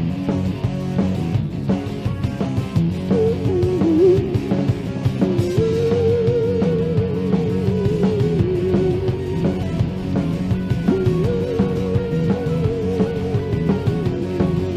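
Live rock band playing an instrumental stretch with guitar to the fore. From about three seconds in, a long note wavers in pitch over the band, with short breaks.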